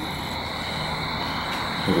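Steady background noise with a constant high-pitched tone and a low hum, no distinct events.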